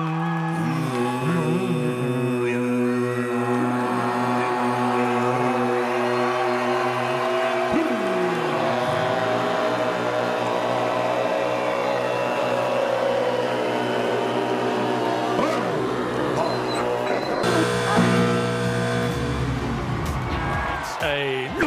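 Tuvan throat singing: a steady low drone held under shifting overtone pitches that move above it like a whistled melody. A hiss of noise joins near the end.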